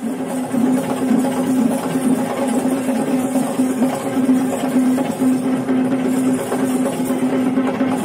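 Traditional Kandyan procession music: a wind instrument holds one steady note with brief breaks over Kandyan barrel drums (geta bera) played by the dancing troupe.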